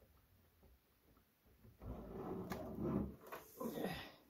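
A Corsair CX750F power supply and its bundle of cables scraping and rustling as they are forced into the bottom of a steel PC case. The sound starts about two seconds in, with a sharp click partway through.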